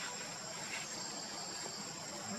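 Steady, high-pitched chorus of insects, a continuous shrill drone with no break.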